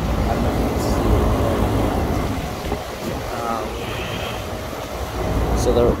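Low, uneven outdoor rumble of wind and rooftop equipment, strongest in the first two seconds and easing after.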